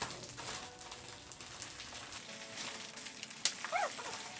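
Glossy magazines and their plastic-wrapped covers being handled on a table: quiet rustling and light knocks, with a sharp click near the end and a brief squeak that rises and falls just after it.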